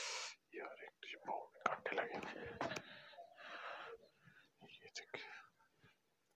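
Whispered speech: a man whispering in short, broken phrases.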